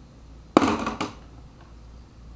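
A short blast of compressed air from a small nozzle fed by a scuba tank, shot through a lobster leg to blow the meat out: a sudden hiss about half a second in that lasts about half a second, ending in a second sharp puff.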